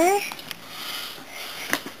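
A young child's voice trailing off at the end of a word, then a soft breath and a light tap shortly before another word begins.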